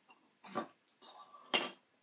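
Tea utensils being handled: a soft knock about half a second in, then a louder, sharp clink about a second later.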